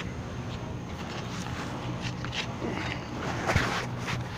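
Gloved hand scraping and rustling through packed debris and a foam sponge gutter guard in a roof gutter, in short scrapes with one sharper stroke near the end, over a steady low hum.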